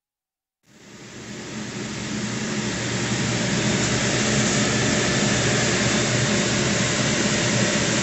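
A steady hiss with a low hum, starting out of silence under a second in, swelling over the next couple of seconds and then holding level.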